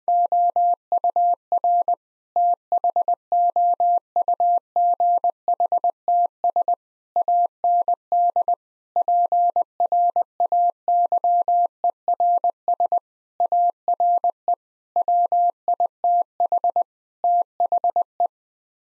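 Morse code sent as a single steady sidetone, about 700 Hz, keyed into dots and dashes at 20 words per minute, with short gaps between letters and words. It spells out a seven-word phrase, heard spoken afterwards as 'thoughts and prayers are with the…'.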